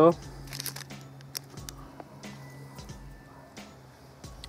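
Someone eating a sugar-coated fruit jelly bar: soft chewing and mouth sounds with a few light clicks, over a faint steady low hum.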